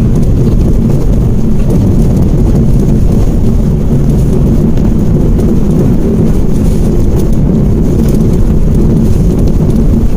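Steady low rumble of a Mitsubishi Mirage driving along an open road, heard from inside the cabin: engine and tyre noise with no breaks or changes.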